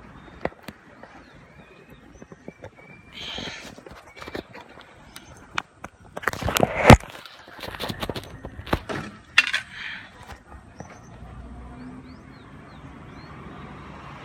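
A hand-held phone being handled and moved about close to its microphone: a scatter of sharp clicks, knocks and rubbing, loudest about seven seconds in.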